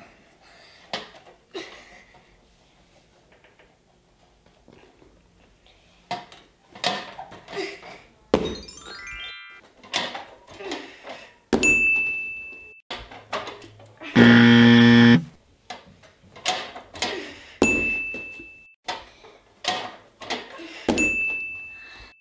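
Edited-in sound effects over a gymnast's knocks and thumps on a home practice bar and the floor: a falling run of notes, three short high dings, and a loud one-second buzz in the middle, the loudest sound.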